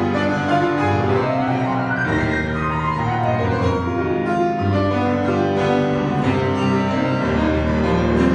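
Grand piano played solo in an improvisation, continuous and full: held low bass notes under a dense flow of chords and melody in the middle and upper range.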